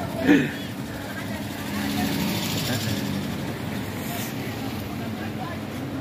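Traffic on a rain-wet city street: the hiss of car tyres on wet pavement, swelling as a car passes about two seconds in, with the voices of people walking by and a brief loud call just after the start.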